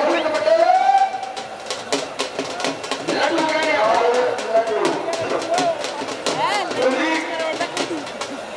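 Men's voices calling out, some in drawn-out tones, with a quick run of sharp clicks in the middle.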